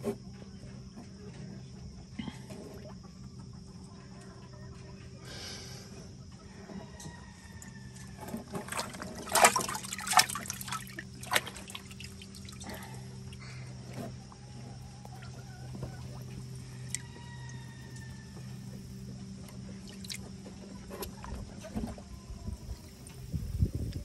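Water sloshing, splashing and dripping as a young chicken is dipped and lifted in a plastic tub of water, with the loudest splashes about nine to eleven seconds in. Faint short bird calls come now and then.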